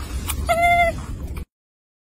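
A baby macaque giving a single short, clear coo call about half a second in, with a slight rise and fall in pitch, over a steady low rumble of background noise; the sound cuts off abruptly at about one and a half seconds.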